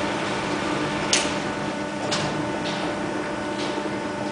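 Steady hum of a sawmill's frame-saw line machinery running, with four short hissy bursts spread through it.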